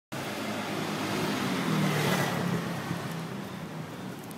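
A motorcycle passing close by on the street, its engine growing louder to a peak about two seconds in and then fading as it goes by.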